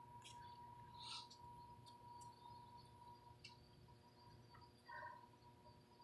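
Near silence: room tone with a faint steady hum and a few tiny clicks.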